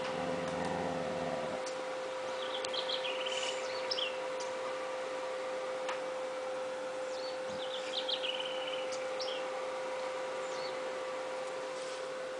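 A dog growling low for about the first second and a half as it eats and is touched, then bird chirps twice in the background over a steady hum.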